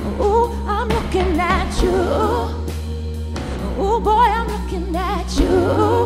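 A woman singing melismatic vocal runs with wavering pitch, in two phrases, over a live pop band's sustained bass and keyboard accompaniment.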